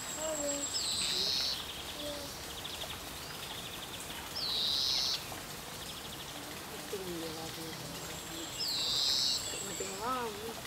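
A songbird repeats the same short, high phrase three times, about four seconds apart, over faint chirping and a steady outdoor background noise.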